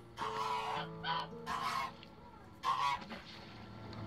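A goose honking four times in about three seconds, the second call short, with pauses between.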